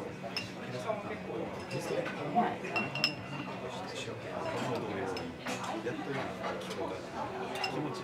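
Cutlery clinking against china plates and glassware at a dining table, with scattered sharp clinks, the loudest a little over two and three seconds in, one with a short ring, over murmured voices.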